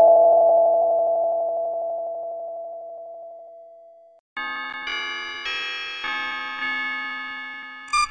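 Electronic logo jingle. A sustained chord fades steadily to silence about four seconds in. Then a bright, bell-like chord starts and is struck again roughly twice a second, fading a little after each strike.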